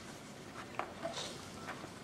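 Hushed hall: low room tone with a few scattered faint clicks and rustles.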